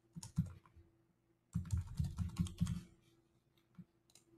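Typing on a computer keyboard: a short flurry of keystrokes just after the start, then a longer rapid run of keystrokes lasting about a second and a half.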